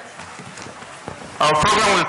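Hall ambience of people moving about, with faint scattered knocks and footsteps. About one and a half seconds in, a man's amplified voice starts speaking loudly.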